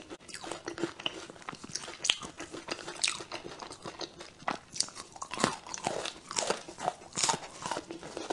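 Close-up biting and chewing of a piece of filled dark chocolate bar: irregular crisp crunches and snaps throughout, with a few louder cracks.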